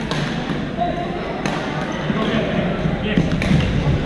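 Badminton rackets striking the shuttlecock in a rally, several sharp cracks at irregular intervals, with footfalls on the court floor, all carrying in a large gym hall.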